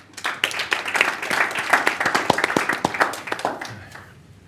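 An audience applauding, the clapping dying away near the end.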